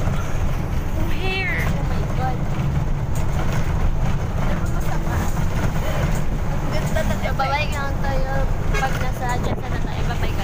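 Inside a moving bus: a steady low rumble of engine and road noise, with voices talking over it now and then.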